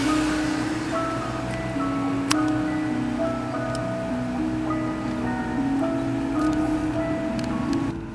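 Background music: a slow instrumental melody of held notes, cutting off suddenly at the end.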